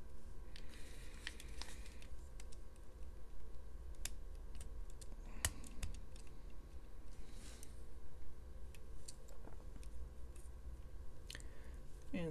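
Small plastic LEGO pieces clicking and tapping as they are handled and pressed together, in scattered, irregular clicks over a low steady hum.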